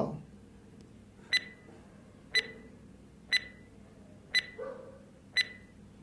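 Quiz countdown timer sound effect: five short, pitched ticks, one a second, starting about a second in.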